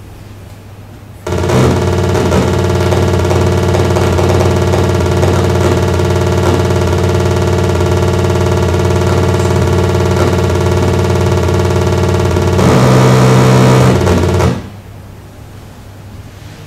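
Ferranti Pegasus simulator playing its imitation of the computer's loudspeaker output while a program runs: a steady, buzzing tone with many overtones for about eleven seconds. It switches to a louder, different note for the last two seconds, then stops suddenly.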